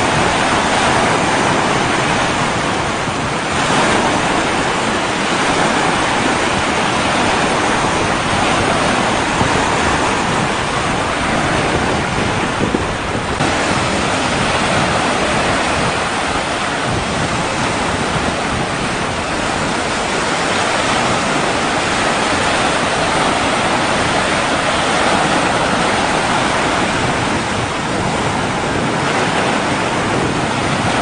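Wind-driven waves on a wide reservoir washing onto a stone shoreline, heard as a steady rush mixed with wind on the microphone.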